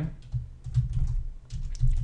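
Typing on a computer keyboard: a quick, uneven run of key clicks.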